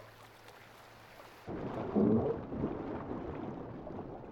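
Faint river water for the first second and a half, then a sudden switch to muffled underwater churning and bubbling as a grizzly bear dives, loudest about half a second after it starts.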